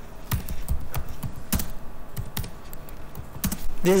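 Computer keyboard being typed on: a dozen or so short, irregularly spaced key clicks as a command is entered.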